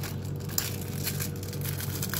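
Plastic biscuit packet being torn open and crinkled by hand, an irregular run of crackles with one sharper snap about half a second in.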